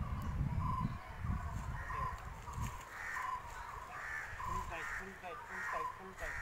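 A bird calling over and over at a steady pace, short calls a little under a second apart. A low rumble is heard in roughly the first half.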